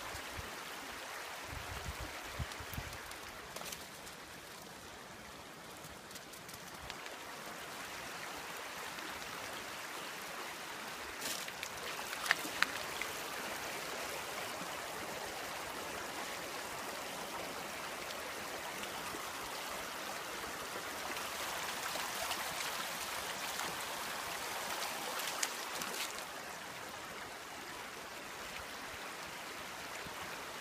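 A stream running steadily, a constant rushing of water that swells and eases slightly, with a few sharp clicks about twelve seconds in and again around twenty-five seconds in.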